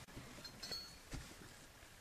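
Faint handling noises as plush toys and small props are moved by hand: a few light clicks and a brief, faint high clink.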